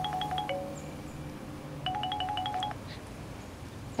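Mobile phone ringtone: rapid electronic beeps, about eight a second over a held tone, in two short bursts, one ending about half a second in and another starting about two seconds in. It is an incoming call, answered right after.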